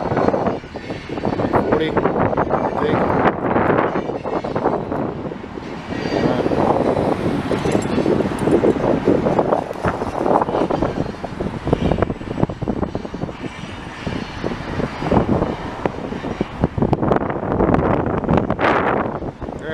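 A car driving, with road and wind noise from inside the moving vehicle that swells and dips in loudness.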